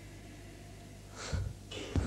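Steady low electrical hum, then about a second in a short thump and a breathy rush, and near the end a sharp intake of breath by a man just before he speaks.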